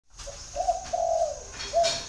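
Spotted dove cooing one phrase: a faint short note, two longer coos, the second sagging downward at its end, and a short final coo near the end.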